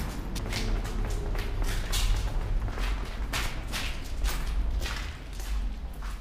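Footsteps of a person walking across a debris-littered floor, a bit under two steps a second, over a low steady rumble.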